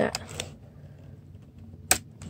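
Polaroid 420 Land Camera's folding front being pulled out: a few faint clicks of the front and struts, then one sharp click near the end as it locks open.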